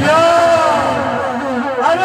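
A man's voice through a microphone and PA, holding one long sung call that rises at the start and falls away near the end.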